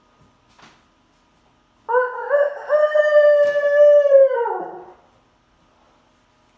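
A cock-a-doodle-doo rooster crow: a few short stepped notes, then one long held note that drops away at the end, lasting about three seconds.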